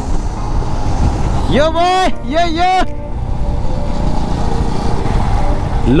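Steady engine and wind rush of a motorcycle on the move. About a second and a half in, a drawn-out 'yo' call rises over it.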